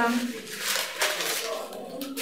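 A fabric clutch bag being opened and handled, its material rustling and scraping for about a second and a half.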